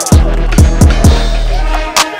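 Hip-hop backing track: deep electronic bass hits with hi-hats, the bass holding a low note until just before the end.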